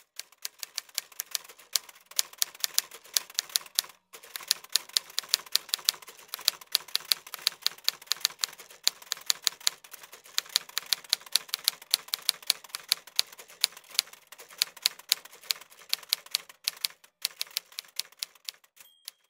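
Rapid, uneven keystroke clicking like typewriter keys, several clicks a second, with a short break about four seconds in and another near the end.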